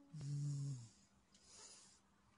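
A woman putting on a giant's deep voice: a low grunt with a rough hiss, lasting under a second, as her sung note ends, then a short breathy exhale.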